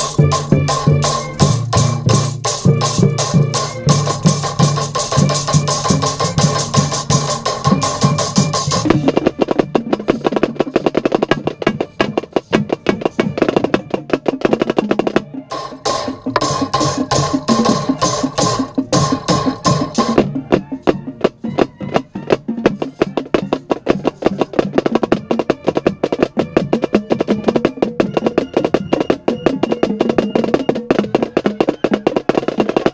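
Marching snare drum with an Evans head played close to the microphone: fast, continuous stick strokes and rolls for the whole stretch. A marching band's wind section holds chords over the drumming for about the first nine seconds and again briefly past the middle; the rest is mostly the drumline alone.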